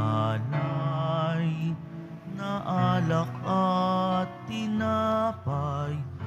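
A slow hymn sung by voices with wavering, held notes over sustained low accompaniment notes: the offertory hymn at Mass, sung during the preparation of the gifts.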